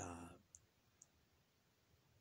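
The last of a woman's words trailing off, then near silence with two faint, short clicks about half a second apart.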